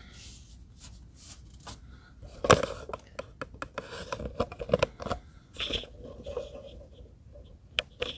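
Handling noise from hands on a plastic display turntable: a string of light clicks and scrapes, with one sharp click about two and a half seconds in.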